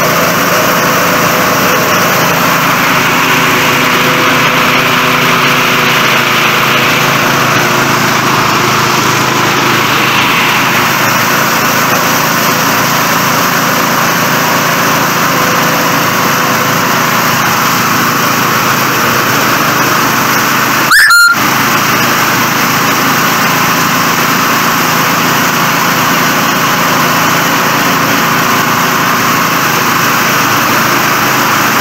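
Small-engine-driven rice thresher running steadily while rice stalks are fed into its threshing drum. A brief, sharp, louder burst cuts in about two-thirds of the way through.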